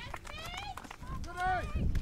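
Two distant, high-pitched shouted calls from a voice on the field or sideline, cheering a goal just kicked.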